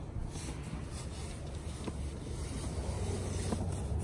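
Cotton military uniform shirt rustling as it is handled and folded, over a steady low rumble, with one faint tick about two seconds in.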